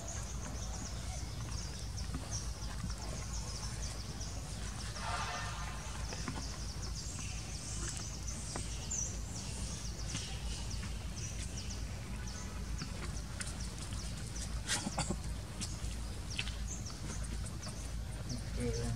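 Outdoor ambience: many short, high-pitched animal chirps over a steady low rumble, with a brief louder call about five seconds in and a few sharp clicks near the end.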